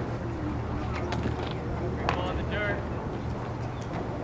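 Outdoor ballfield ambience: a steady low rumble with faint, distant voices calling out and a few light clicks.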